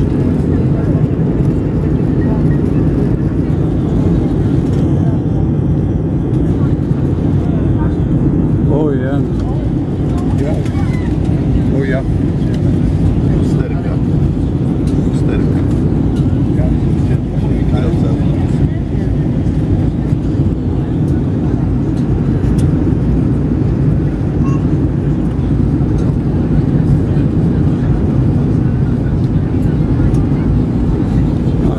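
Loud, steady cabin noise inside an Airbus A320-family airliner during descent toward landing: the engines and airflow make an even low rumble with no changes, and faint passenger voices sit in the background.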